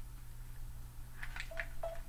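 A few light plastic clicks and taps as a Kindle Fire tablet is handled into a tripod stand's spring clamp holder, bunched in the second half, with two short beep-like tones among them, over a steady low hum.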